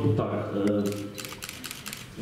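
A man speaking over a hall microphone for about a second, followed by a quick run of sharp clicks lasting about a second.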